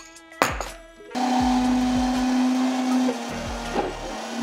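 Countertop blender switched on about a second in, its motor running with a steady hum as it blends frozen fruit with yogurt into frozen yogurt. It gets a little quieter after about two seconds.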